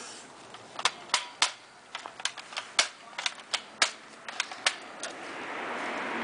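A toy rifle firing or clicking: about a dozen short, sharp clicks at an uneven pace, a few tenths of a second to half a second apart. A steady hiss builds near the end.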